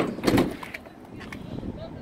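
Sliding side door of a Ford Transit 350 van being pulled shut: a sharp click, then a moment later a shorter, duller clunk as the door moves along its track.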